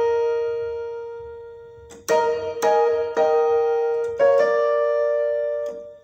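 Electronic keyboard with a piano voice playing a slow gospel run drawn from the B-flat blues scale. One chord rings and dies away over the first two seconds. New notes then follow about every half second, and the last one is held and fades out near the end.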